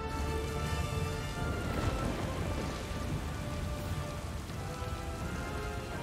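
Steady rain falling, with soft background music of long held notes underneath.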